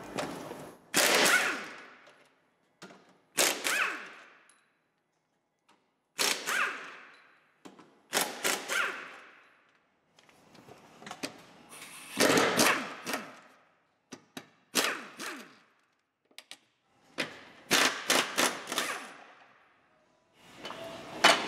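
Pneumatic impact wrench run in short rattling bursts, about ten in all, each a second or less with pauses between, loosening bolts under a 2007 Seat Leon during clutch replacement.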